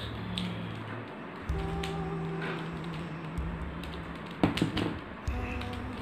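Plastic clicks of a mirror cube's faces being turned, with a loud cluster of clicks about four and a half seconds in, over background music with long held low notes.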